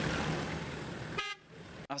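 Engine and road noise from a convoy of SUVs driving on a dirt track, with a short horn toot a little over a second in.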